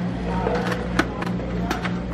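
Steady low room hum with a few short, sharp clicks and taps scattered through it and faint distant voices.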